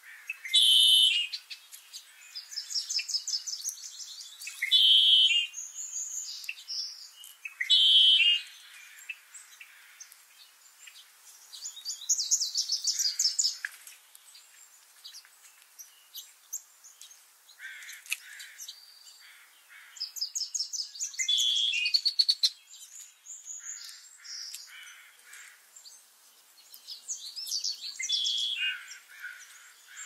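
Several songbirds singing and calling: loud clear notes every few seconds early on, mixed with fast high trills and scattered quieter chirps.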